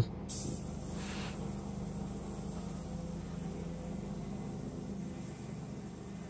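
Airbrush giving a short hiss of air about a second long near the start, over a steady low hum.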